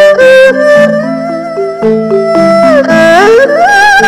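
Erhu and balafon playing a duet. The erhu holds bowed notes with vibrato and slides up in pitch near the end, over a pattern of short struck balafon notes.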